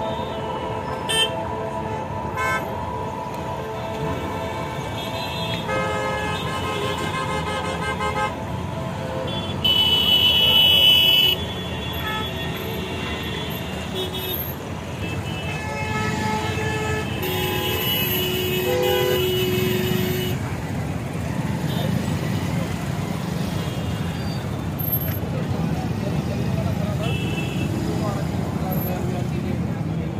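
Vehicle horns honking again and again over steady road-traffic noise. The loudest is a high horn blast of about a second and a half, about ten seconds in.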